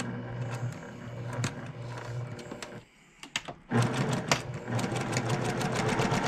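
Electric domestic sewing machine stitching a seam through paired quilt fabric squares, its needle running in a fast, even rhythm. It stops for about a second near the three-second mark, then starts again louder.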